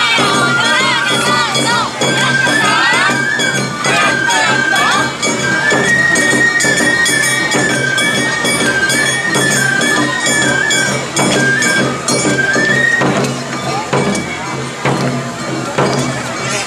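Awa Odori festival music: a bamboo flute plays a stepping melody over a steady, driving beat of drums and a clanging metal hand gong. The flute drops out about three seconds before the end while the percussion continues.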